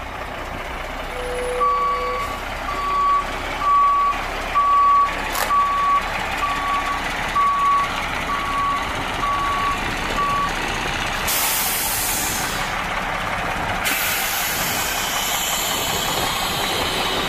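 A heavy truck's backup alarm beeping about once a second, around ten beeps, then stopping. Two bursts of air hiss follow, the second running on to the end, over the steady running of the diesel engine.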